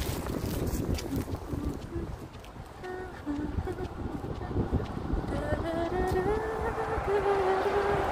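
Wind buffeting a handheld microphone, a low rumble that eases off for a moment in the middle. In the second half a steady pitched tone is held for a few seconds.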